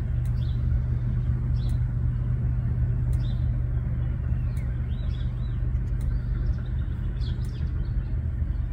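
A steady low rumble and hum, with small birds giving short chirps every second or so over it.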